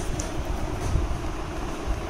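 Steady low rumble with a fainter hiss of background noise, without distinct events.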